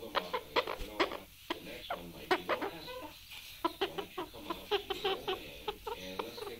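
A broody female Amazon parrot giving a rapid, irregular string of soft hen-like clucks and grunts while being stroked, with a short pause midway. This is the brooding call of a hen in breeding mode.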